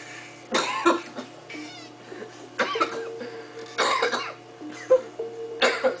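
A man coughing and gagging in several short, harsh bursts, a disgusted reaction, with steady music playing underneath.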